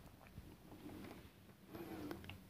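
Near silence, with a few faint soft taps and rubs as fingertips press a carved rubber stamp down onto paper.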